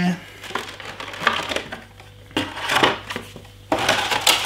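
Clear plastic wrapping crinkling in several short bursts as it is pulled off a hand warmer.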